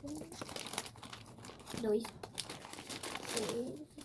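Plastic candy packaging crinkling irregularly as sweets are handled and packed into small cardboard favour boxes.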